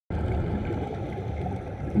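Steady low underwater rumble picked up by a submerged camera, water noise with no distinct events.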